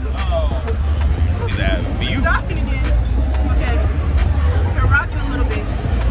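Steady low rumble of wind buffeting a phone microphone in an open Ferris wheel gondola, with scattered voices and faint music from the fair below.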